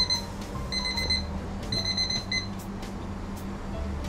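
Electronic timer beeping in short, high-pitched beeps about once a second, stopping about two and a half seconds in. It signals that the twenty-minute steaming of the bone-in whole fish is finished.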